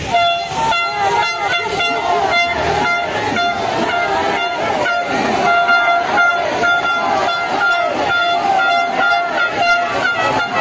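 A horn held on one steady note through the whole stretch, over the din of a crowd of people.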